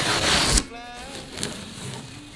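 Blue painter's tape being peeled off a pine board edge: a steady ripping noise that stops abruptly about half a second in. A quieter stretch follows.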